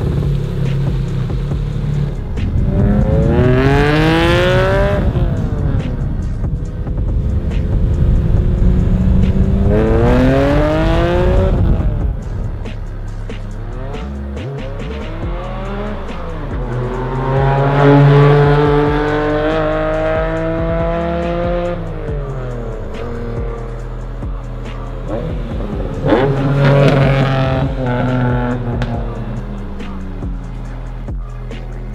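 Honda NSX V6 engine revving hard under acceleration four times, each time climbing steeply in pitch and then dropping away, between stretches of steadier, lower running.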